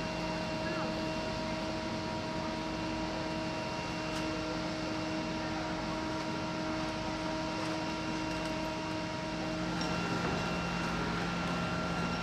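Steady mechanical drone of a running engine, with several held tones over an even rushing noise; the tones shift about ten seconds in.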